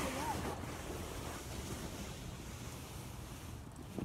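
A sled sliding over crusted snow, a steady scraping hiss that slowly fades as the sled moves away.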